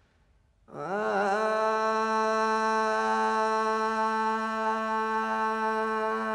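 Solo male voice singing a Taomin hua'er (Gansu flower song). After a short pause it swoops up into one long, steady held note, with a brief waver where the pitch settles.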